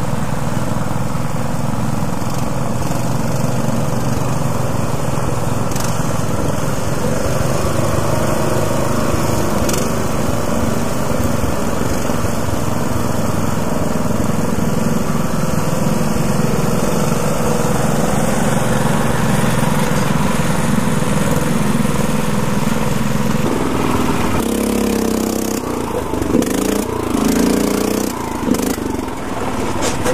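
Small garden tractor engines running as the tractors crawl through mud. About three-quarters of the way through, the sound changes abruptly and becomes uneven, with the level rising and falling.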